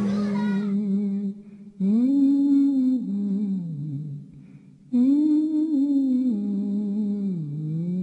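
A single voice humming a slow tune in long held notes that rise and fall, breaking off twice for a breath.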